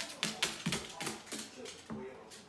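A Moluccan cockatoo's feet and claws tapping on a granite countertop as it struts and hops, several irregular sharp taps, some with a dull thud.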